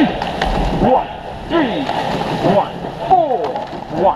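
Shouted calls, short and repeated, over the rush and splash of water from a racing rowing boat's oars.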